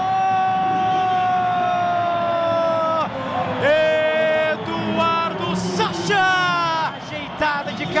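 A Brazilian TV football commentator's drawn-out goal shout: one long call held for about three seconds, slowly falling in pitch, then shorter excited shouts, over stadium crowd noise.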